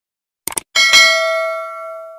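Subscribe-button sound effects: two quick mouse-click sounds about half a second in, then a bell ding that rings with several tones and fades over about a second and a half.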